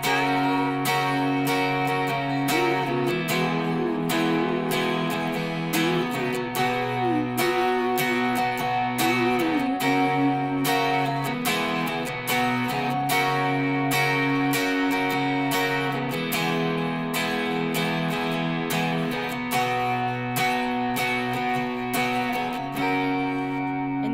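Electric guitar with a capo, strumming chords in a steady down-and-up country pattern through an amp.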